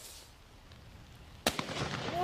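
A single shotgun shot about one and a half seconds in, sharp and sudden, after a stretch of faint outdoor quiet.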